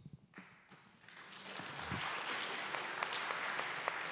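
Audience applauding, starting as scattered claps and building within about a second and a half into steady applause.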